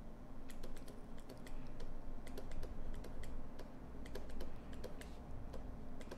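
Light, irregular clicks and taps, a few a second, from handwriting fractions onto an on-screen worksheet, over a faint low hum.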